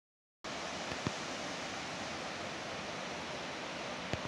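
Steady rushing of the fast, flood-swollen Swat River, starting abruptly about half a second in, with a single small click a second in.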